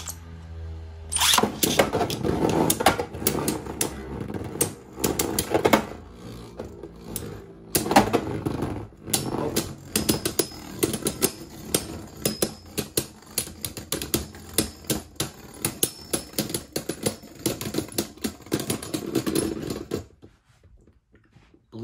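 Beyblade Burst DB spinning tops, Astral Spriggan and Dynamite Belial, clashing in a plastic stadium: a low hum at first, then from about a second in a long, dense run of clacks and rattles as the tops knock together and against the stadium, stopping near the end as they come to rest.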